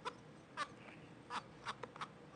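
Computer mouse clicks: about five short, sharp clicks spread unevenly over two seconds, faint against a low hiss.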